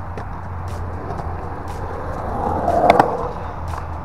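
Skateboard wheels rolling on concrete skatepark pavement, a steady rumble that grows louder and peaks in a sharp clack about three seconds in.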